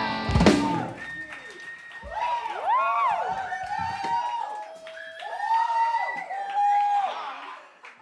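A live rock band crashes out its final chord with a loud hit about half a second in. Ringing tones and rising-and-falling whoops and cheers follow, with some applause, fading near the end.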